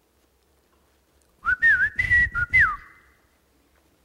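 A man whistling a short home-calling whistle of a few notes that slide up and down, about a second and a half in, into a microphone, with a brief echo trailing after it. It is the family whistle a mother used to call her child home, like a ringtone.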